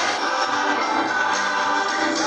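A choir singing gospel music live in a hall, heard from among the audience.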